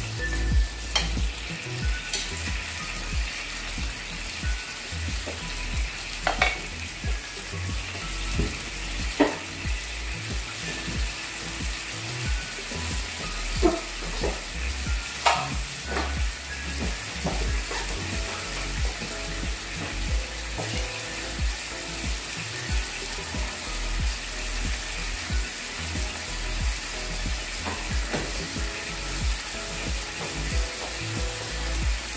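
Sardine and tomato sauce sizzling and simmering in an aluminium wok on a gas burner: a steady hiss with a scattering of sharp clicks as a metal spatula stirs and knocks against the pan.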